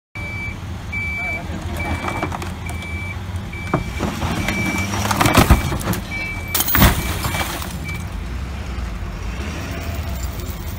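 A vehicle's electronic warning beeper sounding one high note a little faster than once a second, over the low steady rumble of idling vehicle engines; the beeping stops about eight seconds in. Two loud, brief noisy bursts come in the middle.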